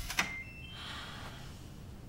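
A door latch clicks shut just after the start, followed by a short series of rising electronic beeps from a digital door lock as it locks.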